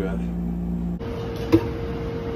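Steady low hum of room tone. About a second in it gives way to a cafeteria kitchen ambience with a steady hum, and a single sharp clink of a metal serving spoon against a steam-table pan.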